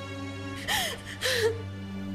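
A young woman crying, with two sobbing gasps in quick succession over sustained held chords of background music.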